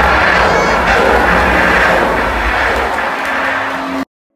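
Loud, deep rumbling noise from the effects of a live Wild West stunt show, easing off near the end.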